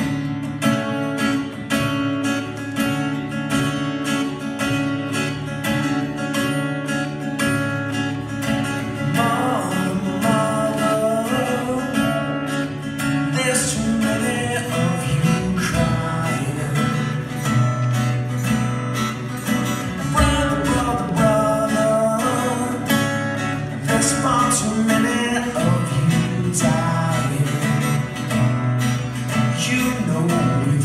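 Two acoustic guitars playing a live song intro together, strummed and picked chords. A man's singing voice joins about nine seconds in and carries on over the guitars.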